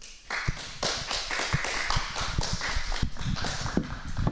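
Applause: many hands clapping at once, starting about a third of a second in and continuing steadily, at the close of a lecture presentation.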